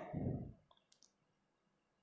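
The end of a spoken word trailing off, then quiet room tone with one faint, short click about a second in.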